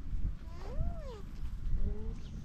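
An alpaca humming once, a short call that rises and then falls in pitch, over a low rumble.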